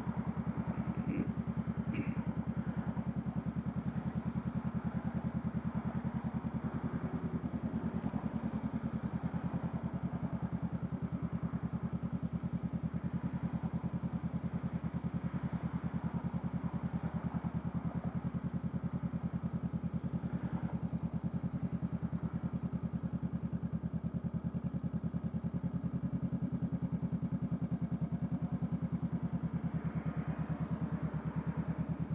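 Honda Rebel 500's parallel-twin engine idling steadily at a standstill, an even low pulse of exhaust beats.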